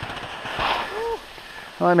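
Skis scraping and sliding over firm spring snow through a turn, a hiss that swells about half a second in, with a brief vocal sound around a second in and a voice starting near the end.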